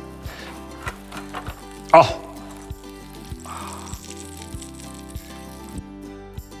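Melted cheese sizzling briefly on a hot ridged contact-grill plate, the hiss rising for about a second just past halfway, over steady background music.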